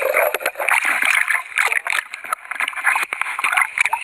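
Seawater splashing and churning around a GoPro camera as it goes under and breaks the surface, a dense wash of water noise full of small crackles and knocks.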